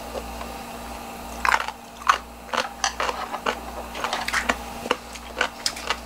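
Close-up eating sounds: a run of short, irregular crunches and clicks, a few a second, over a low steady hum.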